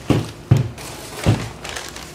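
Three dull thumps as packaged parts are pulled from a cardboard box and set down on a table, with some rustling of packing paper.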